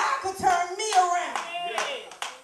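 Church congregation clapping, with several voices calling out over the claps.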